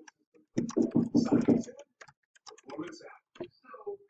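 Typing on a computer keyboard, a quick run of keystroke clicks, with a man's voice speaking briefly about half a second in.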